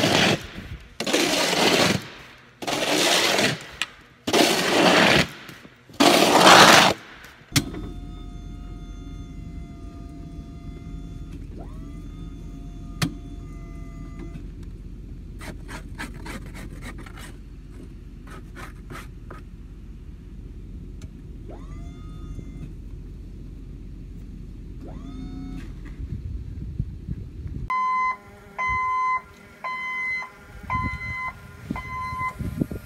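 Five loud gusts of noise about a second and a half apart, then a steady low engine hum with scattered clicks for about twenty seconds. Near the end a forklift's reversing beeper starts, beeping again and again.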